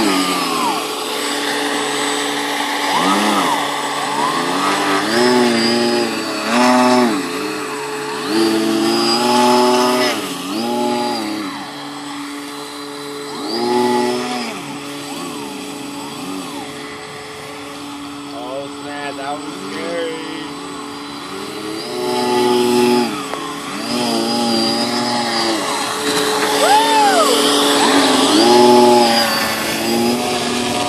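Brushless outrunner motors and propellers of a homemade RC hovercraft running. A steady whine holds under a second motor note whose pitch swings up and down again and again as the throttle is worked.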